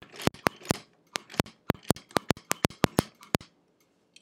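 Sewing machine stitching slowly, each needle stroke a sharp click, about four to five a second in an uneven run that stops about three and a half seconds in.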